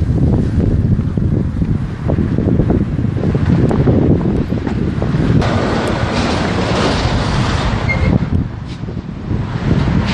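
Wind buffeting a handheld phone's microphone: a loud, uneven low rumble, with a broader hiss swelling from about five seconds in and fading by about eight.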